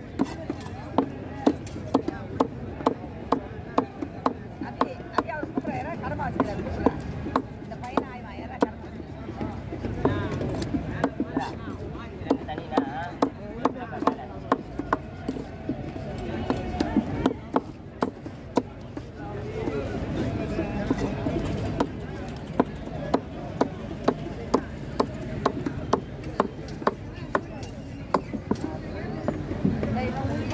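A heavy knife chopping pacu (freshwater pomfret) into steaks on a wooden log block: sharp chops about once or twice a second, with a few short pauses. Voices chatter in the background.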